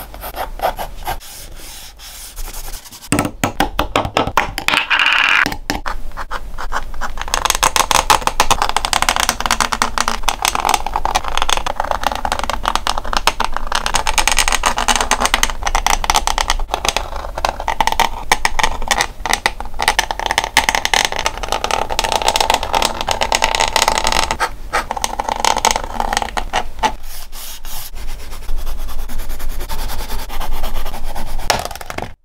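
Drawing tools scratching on sketchbook paper in quick, dense strokes: a dip-pen nib inking lines and pencil hatching and shading. A small ink jar is handled a few seconds in.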